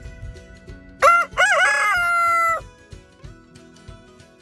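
A rooster crowing once, about a second in: a short first note, then a longer one that ends on a steady held tone. Background music plays underneath.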